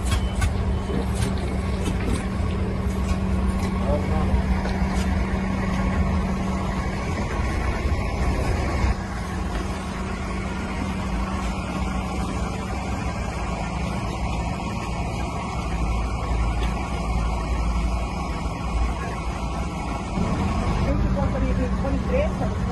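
A bus engine idling with a steady low hum, with voices talking over it.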